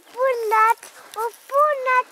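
A high-pitched human voice speaking in three short, excited phrases; the words are unclear.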